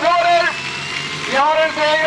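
A man's voice talking, broken by a short pause in the middle; a tractor engine runs faintly underneath.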